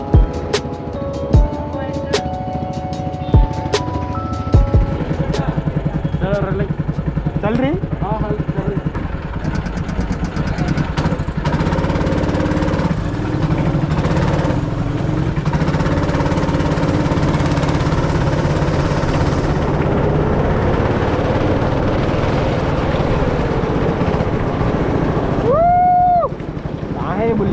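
Background music with a beat for the first few seconds, then a go-kart engine buzzing steadily as the kart drives, its pitch rising and falling with speed. Near the end a driver lets out a long shout of "woooo".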